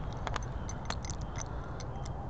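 A quick, irregular run of short, sharp clicks and ticks over a steady low rumble of wind and handling noise on a body-worn microphone.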